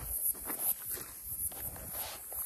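A steady high-pitched insect chorus, like crickets or cicadas, with soft footsteps and rustling on dry earth underneath.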